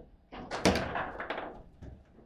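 Table football in play: a loud hard knock about half a second in as a plastic figure strikes the ball, followed by a clatter of the ball, figures and rods against the table that dies away.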